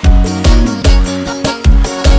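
Live piseiro band playing an instrumental passage: sustained chords over a steady, heavy kick-drum beat of about two and a half beats a second, with no singing.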